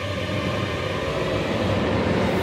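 A low rumbling swell in a dramatic background score that grows steadily louder, building toward drum hits.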